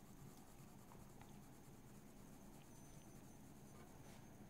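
Near silence with faint colored-pencil strokes on paper, light scratching and a few soft ticks.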